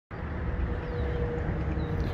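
Steady outdoor background noise: a low rumble with a faint hiss over it, and a faint steady hum for about a second in the middle.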